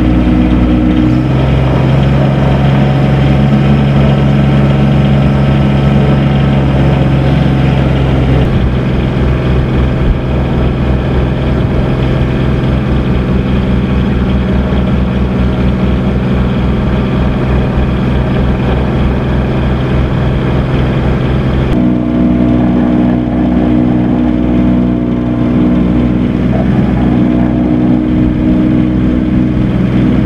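An engine running steadily at idle, a low pitched hum whose pitch and character shift abruptly about a second in, again near 8 seconds, and near 22 seconds.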